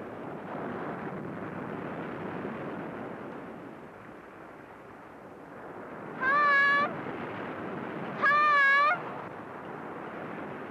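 Surf washing against the rocky shore, steady throughout. About six seconds in, a young girl calls out twice, two long wavering cries about two seconds apart.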